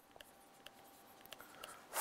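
Faint taps and short scratches of a stylus writing on a pen tablet, with a slightly longer soft scratch near the end.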